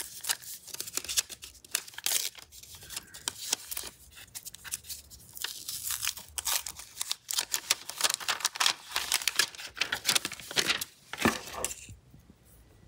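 Printed factory protective plastic film being peeled off a new Redmi Note 12 Pro 5G smartphone: a continuous run of crackling and crinkling that stops just before the end.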